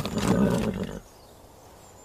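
Horses pulling up on stone paving: a few hoof clops and a brief, rough horse call lasting about a second.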